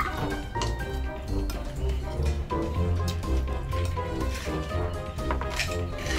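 Background music with a steady bass line and held notes.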